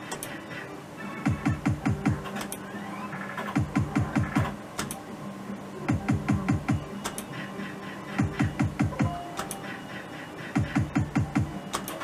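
Merkur Rising Liner slot machine spinning over and over, about every two seconds: each spin ends in a quick run of low thumps as the reels stop, with electronic jingle tones and clicks between the spins.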